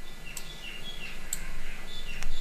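A bird chirping in the background: a series of short high notes, over a steady low hum.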